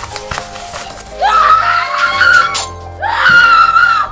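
A woman screaming: two long, high screams, the first starting about a second in and the second near the three-second mark and cut off sharply at the end. They sound over a horror-film score of steady drones, with a few sharp hits in the first second.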